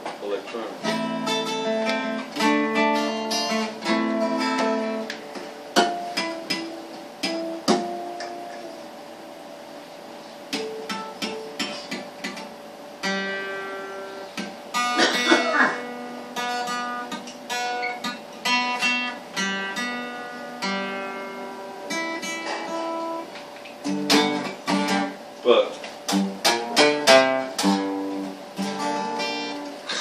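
Acoustic guitar played solo: picked notes and strummed chords ringing out, quieter for a few seconds in the middle.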